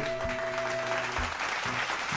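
Applause coming in about half a second in and carrying on, over background music with held notes.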